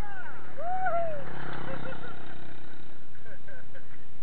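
Steady wind and rolling noise on a camera mounted at a mountain bike's front wheel while riding on pavement, with riders' voices calling out in wordless rising-and-falling shouts, the longest a little under a second in.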